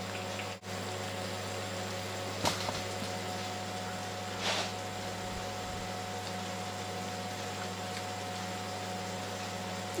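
Steady low kitchen hum, with a sharp click about two and a half seconds in and a short breathy sound near the middle as a spoonful of curry is tasted.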